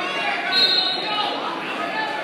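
Spectators' voices in a gymnasium during a wrestling bout, with a loud, brief high tone about half a second in.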